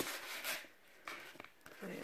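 Cardboard and paper rustling and rubbing as hands handle a rigid gift box and lift its lid, in short scratchy bursts.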